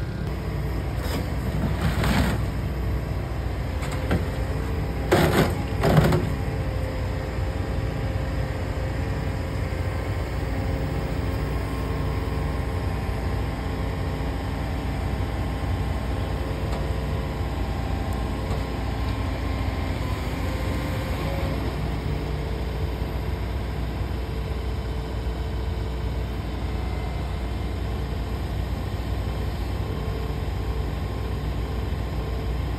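Komatsu PC490HRD-11 high-reach demolition excavator running steadily, its diesel engine and hydraulics working a demolition shear that grips a reinforced-concrete cylinder, with a faint steady whine. A few loud sharp knocks come about two seconds in and again around five to six seconds in.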